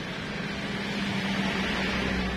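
Steady background noise: an even hiss with a low, steady hum beneath it, growing slightly louder about half a second in.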